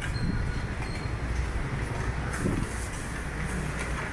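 Street traffic noise: a steady low rumble with an even background hiss.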